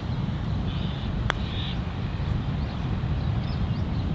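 A single light click of a putter striking a golf ball, about a second in, over a steady low rumble.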